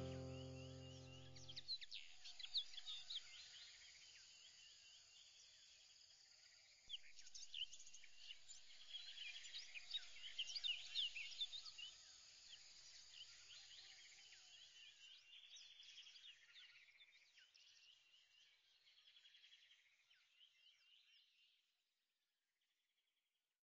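A music chord fades out in the first two seconds, leaving faint birdsong: many short high chirps and trills, busier from about seven seconds in, fading away just before the end.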